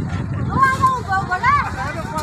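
Several voices calling out and talking over a steady low rumble, the sound of a water tanker truck running while people crowd round it. The calls rise and fall in pitch, with the loudest about half a second and a second and a half in.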